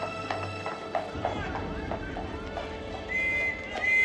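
Horse-drawn carriage passing on cobblestones: hooves clip-clopping in a steady rhythm of about three beats a second, with a horse whinnying, over dramatic background music.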